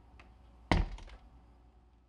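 A single heavy thunk with a deep low end, about two-thirds of a second in, dying away over half a second, followed by a couple of faint ticks.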